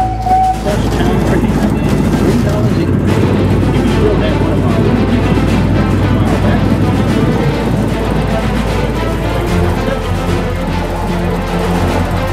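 A miniature train's whistle sounds briefly, cutting off about half a second in, followed by continuous music over the running noise of the ride. A steadier, deeper musical part comes in near the end.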